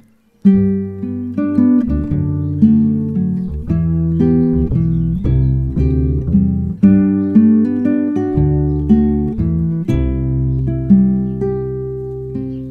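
Acoustic guitar and upright double bass playing an instrumental intro, starting suddenly about half a second in, with plucked guitar notes over sustained low bass notes.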